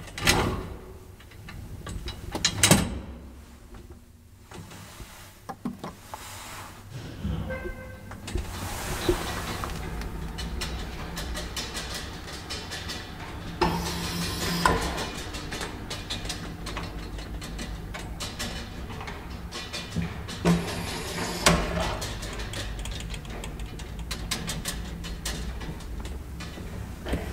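Old traction elevator with a collapsible steel-bar gate: the gate is pulled shut and latched with two loud clacks, then the car starts and travels with a steady low hum and rumble, broken by a few clicks and knocks about halfway through and again later in the ride.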